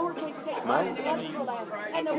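Quiet, indistinct talking: voices murmuring in a room, too low for the words to be made out.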